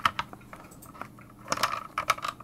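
A few light clicks and knocks from a handheld rotary tool and its cable being handled and picked up from the bench, with a short cluster of clicks about one and a half seconds in.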